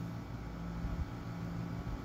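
Steady low background hum of room tone, with no other event standing out.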